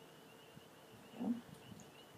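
Quiet room tone with a faint, steady high-pitched whine, and a brief soft spoken "yeah" about a second in.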